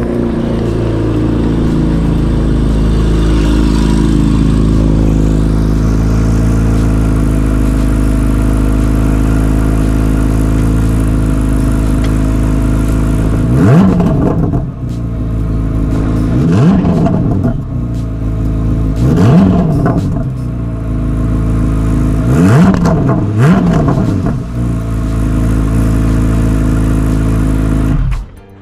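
Chevrolet C8 Corvette Z06's flat-plane-crank 5.5-litre V8 running steadily, then blipped five times from about halfway through, every two to three seconds, the last two close together. The revs stay short because the new engine is still in break-in, held to about 5,500 rpm.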